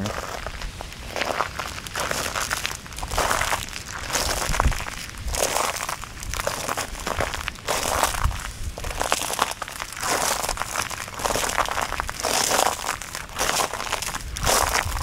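Footsteps crunching on grass glazed with ice from freezing rain, about one crunchy step a second.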